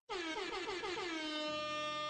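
A loud air-horn-style blast with a quickly wobbling pitch, starting suddenly out of silence and held for about two seconds, with a low steady bass tone coming in under it near the end. It sounds as a new track is started on the DJ deck, the typical DJ air-horn effect.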